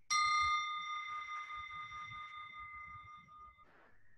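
A small meditation bell struck once, ringing with several clear high tones that slowly fade over about three and a half seconds, marking the end of the meditation sitting.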